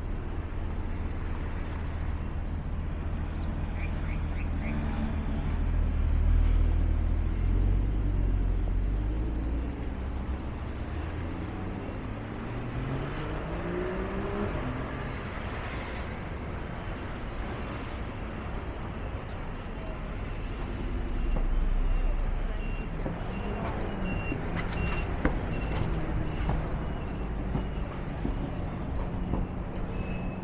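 Road traffic on a city street: a steady rumble of passing cars, with an engine rising in pitch as a vehicle accelerates away partway through, and the traffic swelling louder twice.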